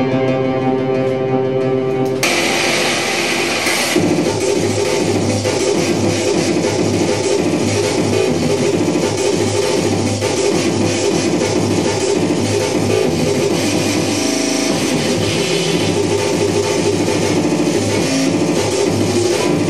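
Loud live band music. Sustained organ-like keyboard chords cut off abruptly about two seconds in, and the band crashes into dense, noisy guitar-led rock with a steady driving rhythm.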